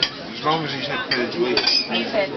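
Cutlery clinking against plates several times during a meal, with one brighter ringing clink a little past the middle.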